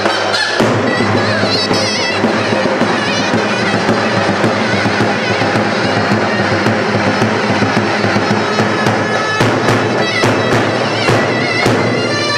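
Zurna (Turkish double-reed shawm) playing a loud, shrill, ornamented halay dance tune over davul drum beats, with the drum strokes standing out more sharply in the last few seconds.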